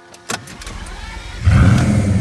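A car engine starting: a click, then the engine catches with a loud rev about one and a half seconds in and keeps running.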